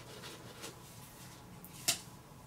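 Quiet rustle of paper scratch-off lottery tickets being handled and flipped through, with one sharp click near the end.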